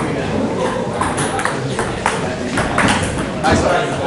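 Table tennis doubles rally: a quick series of sharp clicks as the celluloid ball is struck by paddles and bounces on the table, over background chatter of spectators.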